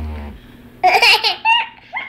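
Handheld four-ball back massager buzzing briefly, cutting off about a third of a second in, followed by a toddler's loud laughter in several bursts.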